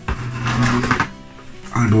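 A sharp knock, then about a second of scraping and rustling as a plywood model plane is moved and turned on the tabletop, over steady background music.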